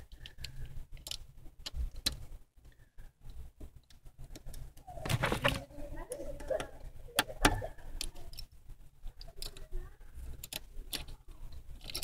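Scattered small clicks and rattles of a plastic wiring connector and its wires being handled and fitted onto a car's ignition switch under the steering column.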